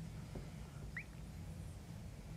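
Faint steady low hum with a single short, rising squeak about a second in.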